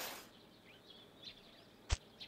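Near quiet with faint bird chirping, broken by a single sharp click near the end.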